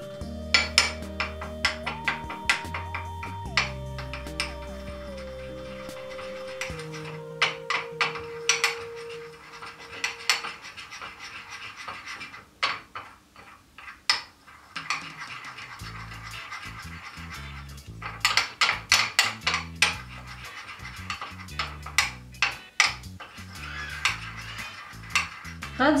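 A metal spoon clinks and scrapes against a small ceramic dish as charcoal powder is stirred into white glue to make a thick black paste. The clinks come in rapid runs, with a quieter lull about halfway through.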